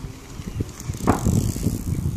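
Cyclocross bike coming close on a muddy grass track. A rush of tyre and drivetrain noise builds about a second in, over low buffeting of wind on the microphone.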